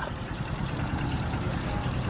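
A motorcycle tricycle's engine idling with a low steady hum.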